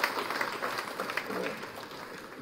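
Audience applauding, many hands clapping at once, thinning out near the end.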